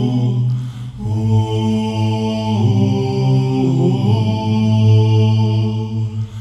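Multitracked a cappella voices singing a low, sustained chord progression in a cinematic movie-theme style. The chords are held and shift every second or so, with a brief break just under a second in.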